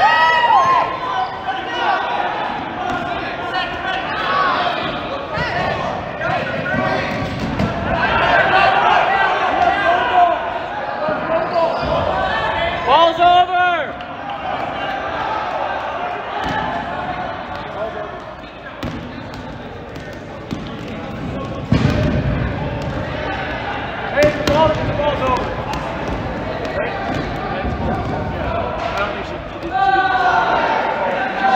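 Dodgeball players shouting and calling to one another in a large gym, with dodgeballs thudding and bouncing on the hard court floor. One loud, drawn-out call rises above the rest about halfway through.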